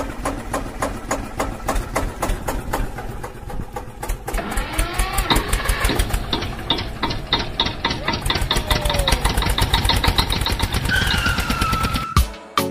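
A vehicle engine running with a rapid, even beat of knocks that quickens about four seconds in, most likely an engine sound effect laid over the toy truck's rescue.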